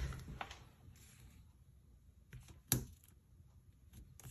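Mostly quiet, with a soft tap and then one sharp click a little under three seconds in, from a stamp being handled on the craft table while stamping a card.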